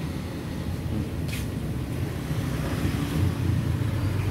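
Steady low rumble of nearby road traffic, with a brief crisp rustle about a second in.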